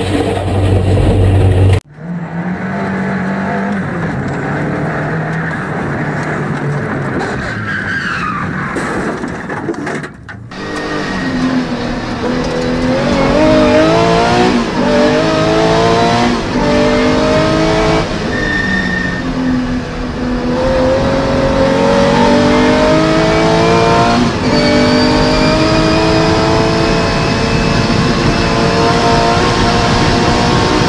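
Racing car engines heard from inside the cockpit, across cut clips. There is a steadier engine note in the first third. After a cut about ten seconds in, a rally car's engine revs hard through the gears, its pitch climbing and dropping back with each shift, the pulls growing longer near the end.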